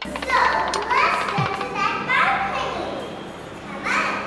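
Children's voices talking and calling out, high-pitched and overlapping, with a louder burst near the end.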